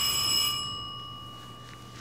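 A single bell-like ding ringing out and fading away. Its higher overtones die out about half a second in, leaving one clear tone that fades slowly.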